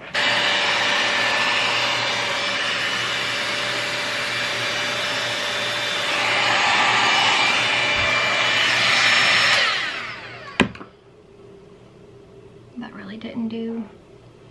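Dyson Airwrap-dupe hot-air styler blowing: a loud, steady rush of air with a motor whine, switched on suddenly and growing a little louder about six seconds in. After about ten seconds the motor winds down, its whine sinking in pitch, and a sharp click follows.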